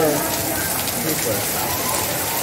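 Steady hiss of light rain falling.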